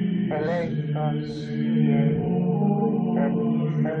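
Devotional chant: a voice singing slow, drawn-out phrases over a steady sustained drone.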